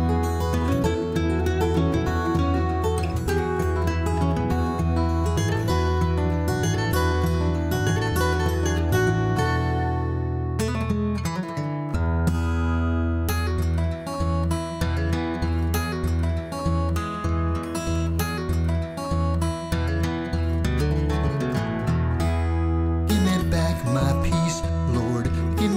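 Acoustic guitar playing an instrumental break in a folk song, with no singing. About ten seconds in the notes ring out and fade briefly before the playing picks up again.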